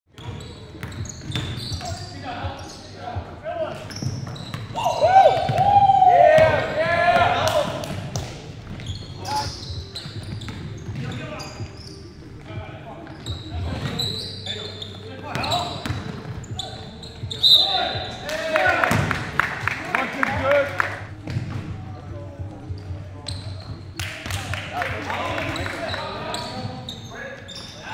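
Live sound of an indoor basketball game: a basketball bouncing on a wooden gym floor in short knocks throughout, with players' voices calling out, loudest twice, all echoing in a large hall.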